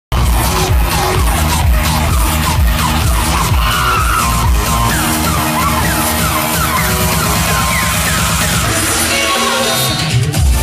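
Loud electronic dance music from a DJ set over a venue's sound system, recorded from the crowd. The kick drum and bass drop out about halfway through, leaving a breakdown of synth lines with short sliding notes, and come back in near the end.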